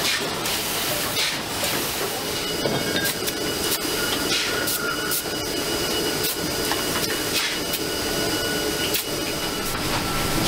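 Waste-sorting conveyor line running: a steady mechanical noise and hiss, with irregular short rattles and rustles of rubbish on the belt and a faint steady high whine.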